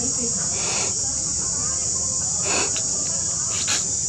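A steady high-pitched chorus of insects, with three brief sounds close by: about a second in, midway through, and near the end.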